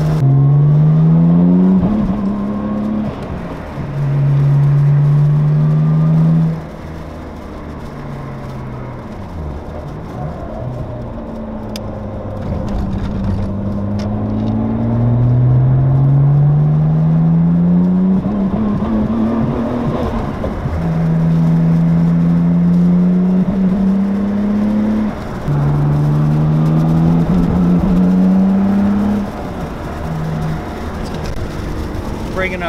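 Nissan R32 Skyline GT-R's twin-turbo RB26DETT inline-six, heard from inside the cabin on a test drive. It pulls through the gears several times, the engine note rising in pitch under throttle and dropping at each shift, with a quieter stretch of lighter throttle a few seconds in.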